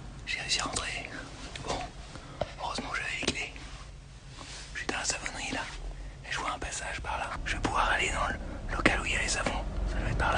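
A man whispering in short phrases close to the microphone.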